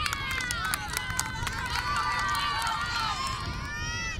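Several women's voices cheering and shouting at once, high and overlapping, with a few sharp claps in the first second or so.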